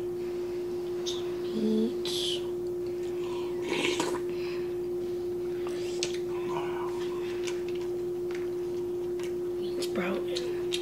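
Close-up eating sounds: chewing with soft clicks and rustles of a spoon and lettuce wraps, a brief hummed 'mm' about two seconds in and a louder rustle about four seconds in. A steady hum tone runs underneath.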